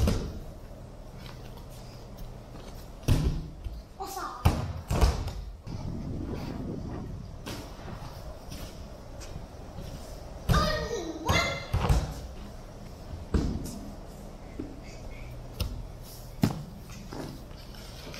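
Children jumping and landing barefoot on foam plyo boxes and gym mats: a series of separate dull thuds spread over several seconds. Children's voices call out in the middle of the sequence.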